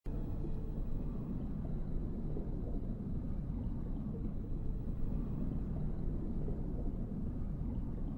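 A steady low rumble with no clear pitch.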